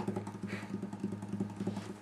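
Acoustic guitar being handled between songs: a run of faint, quick clicks from fingers on the strings and body, over a low steady hum.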